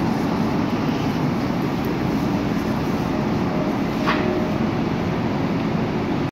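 Long Island Rail Road M7 electric train standing at the platform, its steady rumble and air-handling noise filling the space. A faint thin tone comes in about three seconds in, with a brief sharp sound about a second later.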